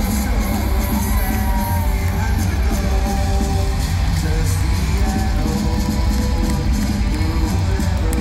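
Loud rock music filling an arena, heard from among the crowd, with singing and crowd yells and whoops mixed in. The bass is heavy and steady throughout.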